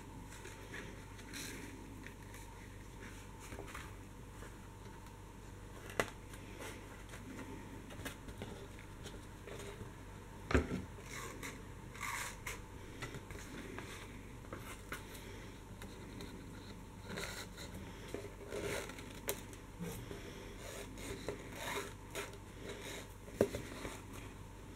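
Handling noise of elastic cord being pulled through the holes of a kraft cardboard notebook cover: soft scrapes and rustles of cord and card, with scattered light clicks, the sharpest about ten and a half seconds in.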